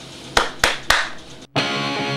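Three sharp hand claps about a quarter second apart, then after a brief cut-out, electric guitar music with a distorted strum starts.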